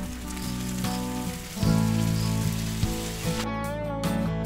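Ground beef and onion sizzling on a hot flat-top griddle as beef broth is poured in, with background music playing.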